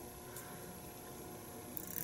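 Faint, steady room tone: a low hiss with a light electrical hum, and no distinct event.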